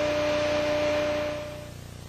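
Steady hiss with a faint steady hum tone underneath, both fading out in the last half second.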